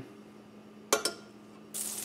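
A single sharp clink about a second in, then butter starts sizzling in a hot frying pan near the end.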